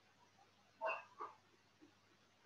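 Two short animal calls about a third of a second apart, the first louder.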